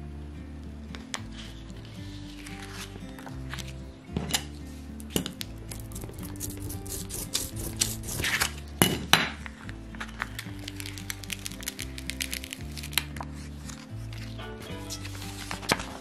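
Background music, with crinkling and sharp clicks of clear plastic transfer tape being handled and pressed onto the vinyl with a hand roller, the clicks loudest a little past the middle.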